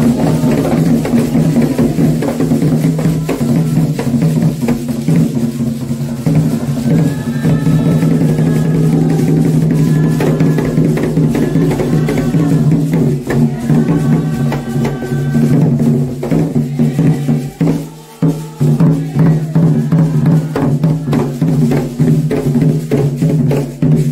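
Candomblé ritual music: drums and percussion keep up a continuous beat under voices singing a chant, with a brief drop in the music about three-quarters of the way through.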